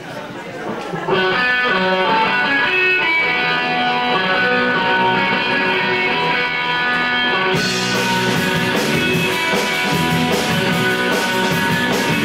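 Live rock band starting a song: an electric guitar plays an intro from about a second in. About two thirds of the way through, the drums and the rest of the band come in with cymbals.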